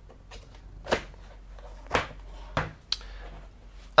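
Plastic clicks of a laptop's battery release latches being slid and the removable battery being pulled out of its bay: about four sharp clicks, the loudest about one and two seconds in.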